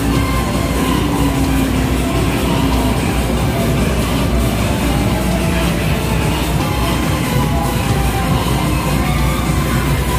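Arcade game sound: electronic music and motorcycle engine sounds from a motorcycle racing arcade cabinet, over the steady din of other game machines.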